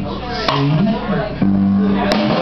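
A live band playing a rock song: male lead singing over piano and drums, with a sharp hit about half a second in and a held note from about one and a half seconds in.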